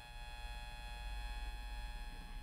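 Faint, steady electrical hum with a thin high whine, unchanging throughout: background noise of the recording setup.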